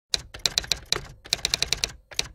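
Typewriter keys clacking in a quick irregular run of about a dozen strikes, in two bursts with a short pause between. It is a typewriter sound effect laid over text typing itself onto the screen.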